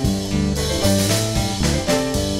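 Instrumental jazz recording, a band with drum kit and changing bass and chord notes, played at a steady tempo.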